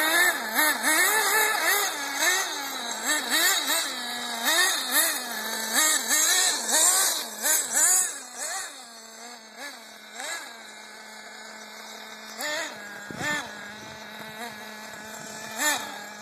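Nitro RC car's small two-stroke glow engine revving up and down in quick repeated bursts as it is driven. It settles to a steady idle in the last few seconds, with a single thump during the idle.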